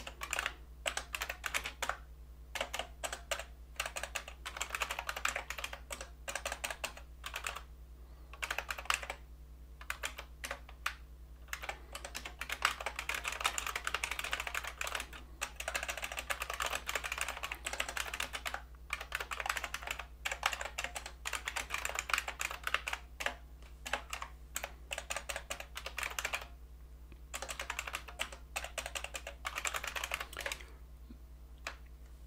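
Typing on a computer keyboard: rapid runs of key clicks in bursts, with brief pauses between them, over a faint steady low hum.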